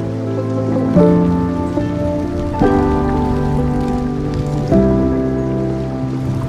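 Calm background music of held, sustained chords that change about a second in and twice more.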